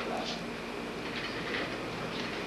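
Steady background hiss and hum with faint, indistinct murmuring of voices.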